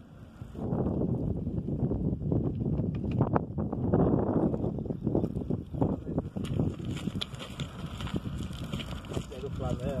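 Wind rumbling on the microphone, with indistinct voices and scattered small knocks; a short spoken word comes near the end.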